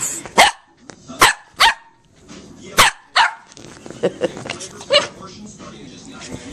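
A small dog barking in short, sharp pairs, three pairs in quick succession, then a few fainter barks near the end.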